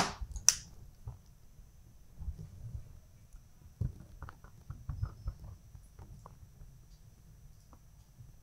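Quiet handling sounds of an eyeshadow brush worked over the eyelid: a short sharp click just after the start, then a run of faint soft ticks and rustles about four to six seconds in.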